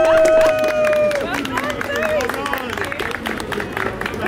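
Upright piano's final chord held and ringing out for about a second, then a small crowd of onlookers applauding with scattered voices.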